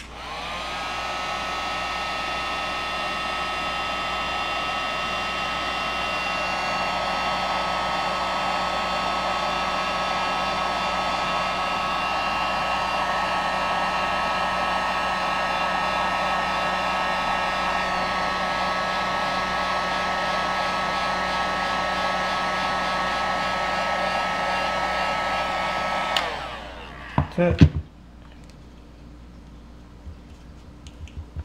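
Electric heat gun running with a steady whir, blowing hot air onto heat-shrink tubing over a USB cable end to shrink it. Near the end it is switched off and its fan winds down, falling in pitch, followed by a few knocks of handling.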